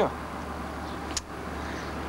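Steady outdoor street background with road traffic, over a low constant hum, and one sharp click about a second in.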